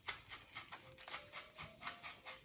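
Sharp knife blade cutting into rigid foam board at an angle, a faint run of quick scratchy strokes.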